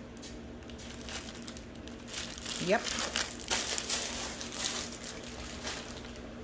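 Clear plastic outer wrapping of a snack multipack crinkling as it is handled in the hand, in a run of crackles mostly between about two and five seconds in.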